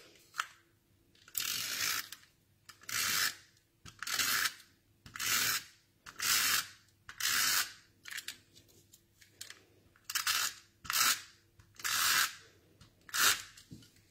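Handheld adhesive tape runner drawn again and again across a row of paper strips: about a dozen short strokes, one every second or so, laying tape on all the strips at once.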